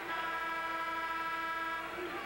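Basketball arena horn sounding one steady, even tone for about two seconds during a stoppage after a jump-ball call, then cutting off.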